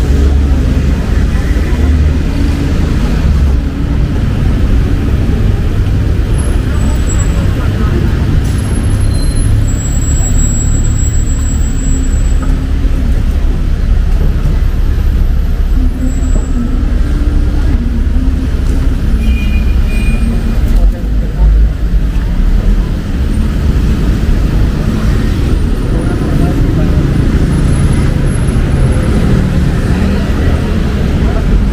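Busy city street ambience: a steady rumble of road traffic with people talking nearby.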